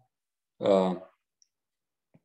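Speech only: a man's voice says one brief syllable about half a second in, with silence around it.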